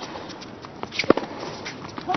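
Tennis ball being struck by rackets and bouncing on a hard court during a baseline rally: a few sharp knocks, the loudest pair about a second in, over a steady background hiss.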